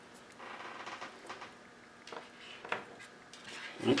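Soft handling noise of a plastic EC3 connector housing and its wires in the hands: a faint rustle, then a few small light clicks.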